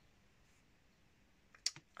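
Quiet room tone, then a single short, sharp click near the end.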